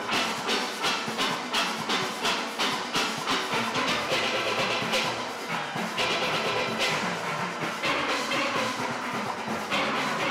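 A full steel band playing in concert: many steelpans struck together in a steady, evenly repeating rhythm.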